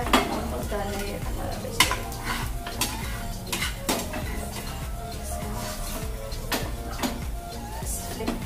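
Metal utensil clinking and scraping against a pan, with about seven sharp knocks spread through, over a light sizzle of food cooking on the tawa.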